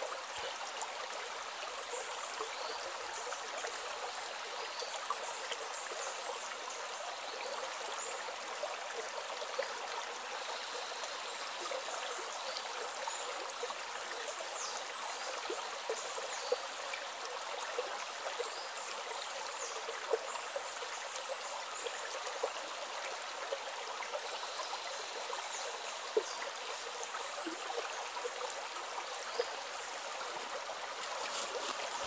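Shallow rocky stream running over stones, a steady babbling rush with occasional louder plinks and small splashes scattered through it.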